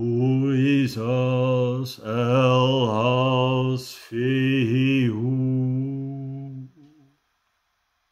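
A man chanting the rune names Isa, Elhaz and Fehu as one low drone held on a single pitch. The long notes break off briefly three times and stop about seven seconds in.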